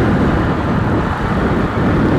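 Honda motorcycle under way at city speed, heard from the rider's seat: a steady, loud rumble of engine and road noise.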